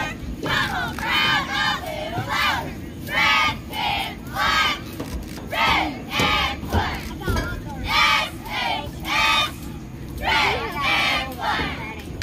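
A cheerleading squad shouting a chanted cheer in unison: short shouted calls in a steady rhythm, about two a second, in repeating phrases.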